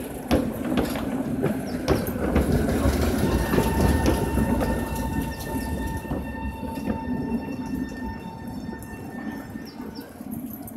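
Two-car Tatra T3-type tram set rolling through the curves of a tram junction. A low rumble is loudest in the first half and fades towards the end, with sharp clacks as the wheels cross the points and crossings, and a thin steady whine above.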